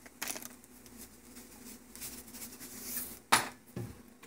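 Quiet handling sounds while a pinch of salt is added to a pot of fried rice: soft rustling and a few light clicks, the sharpest a little over three seconds in.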